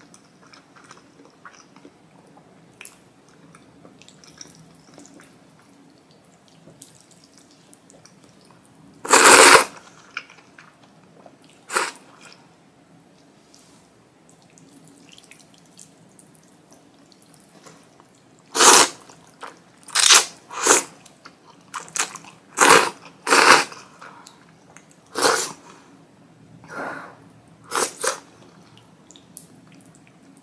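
A person slurping spicy ramen noodles at close range. There is one long loud slurp about nine seconds in and a shorter one near twelve seconds, then a quick run of short slurps through the second half. Faint clicks and chewing fill the quieter stretches.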